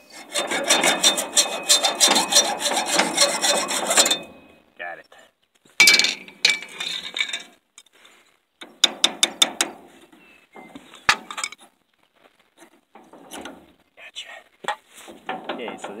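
Hand hacksaw cutting through rusty metal, a fast steady run of strokes for about four seconds, then shorter bursts of strokes with pauses and a single sharp click, as a seized part is cut free.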